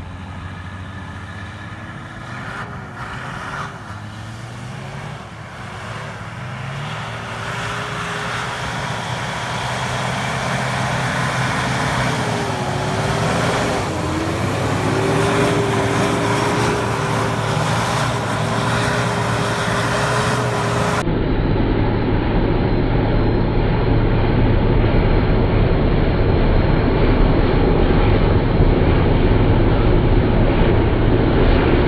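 Nissan Patrol's RD28 straight-six diesel engine revving up and down while its tyres spin and spray snow and mud as it drifts. About two-thirds through, the sound turns louder and rougher, with a strong deep rumble.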